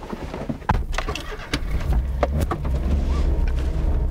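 Daihatsu Cuore's small three-cylinder engine starting with a sudden low rumble under a second in, then running steadily as the car pulls away, with several clicks and knocks over it.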